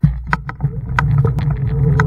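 Xiaomi M365 Pro electric scooter under way on paving: sharp rattling knocks from the scooter over the paving stones over a low rumble. From about halfway in, the hub motor's whine rises slowly in pitch as the scooter gathers speed.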